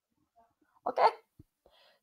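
Near silence in a small room, broken about a second in by one short spoken "Okay?" from a man.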